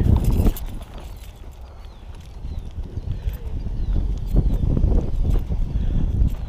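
Low rumbling noise with irregular soft thumps, building again after about two seconds in.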